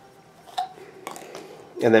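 A few faint knocks of PVC pipe fittings being handled and set down on a wooden floor, followed by a man's voice near the end.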